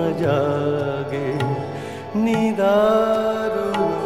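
Male Indian classical singer's wordless, ornamented vocal line with rapid pitch turns, settling on a long held note about halfway through, over instrumental accompaniment.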